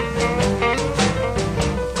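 1960s blues band playing an instrumental fill between sung lines: drums keep a steady beat, about four strokes a second, under held instrumental notes.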